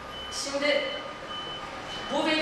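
A brief pause in speech, with one short spoken syllable about half a second in, under a faint, steady, high-pitched tone.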